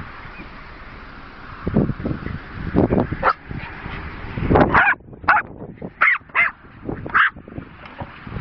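Jack Russell terriers barking and yipping at play, with a run of short, sharp yips in quick succession in the second half.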